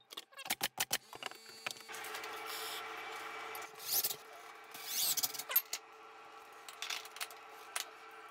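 A few quick knocks, then a drill running steadily, with two short, louder bursts about halfway through as the bit bores a hole through the drywall into the wood blocking behind it for a towel-bar mount.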